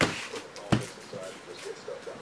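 A few light clicks and taps on a desk, the sharpest one just under a second in.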